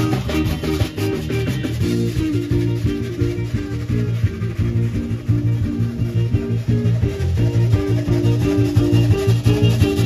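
Live zydeco band playing an instrumental passage: electric guitar, bass guitar and drum kit keeping a steady dance beat with a strong bass line.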